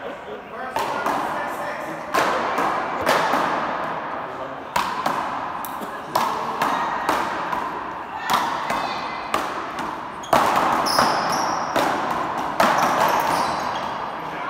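Bigball paddleball rally: paddles striking the ball and the ball smacking the wall and floor, sharp hits about once a second, each ringing on in the echo of the big court hall.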